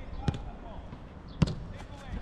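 A football struck by a kick on an outdoor grass pitch: a faint knock just after the start, then a sharp, louder thud of a shot about one and a half seconds in.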